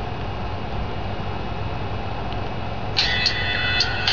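Steady low background noise, then about three seconds in music starts playing from the HTC Touch Diamond phone's small built-in speaker in Windows Media Player.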